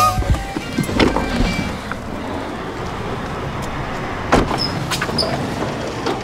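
Steady noise of cars in a store parking lot, with a few sharp knocks, once about a second in and again past the middle.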